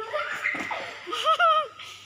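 A person laughing in short, high bursts, loudest a little past the middle.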